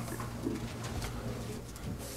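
Quiet room tone through the hearing-room microphone system: a steady low electrical hum, with a faint short low sound about half a second in and again near the end.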